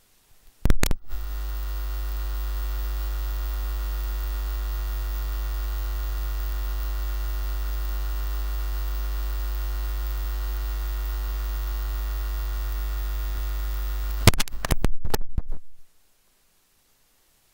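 Loud, steady electrical mains hum on the microphone and sound-system line, a low drone with a ladder of overtones. It comes in after a couple of clicks about a second in and cuts out near the end amid crackling clicks, typical of a grounding fault or a disturbed microphone connection.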